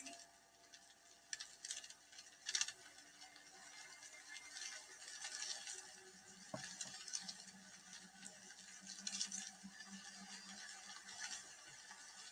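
Faint, sparse light clicks and soft scratchy pattering of a giant Amazonian centipede's legs on cave rock, with a faint low hum in the second half.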